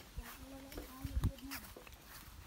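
People's voices talking in the background, with a few short low thumps about a second in.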